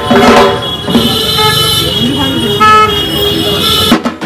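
Busy street with crowd chatter and vehicle horns sounding in long steady toots. A few drum beats fade out in the first half second.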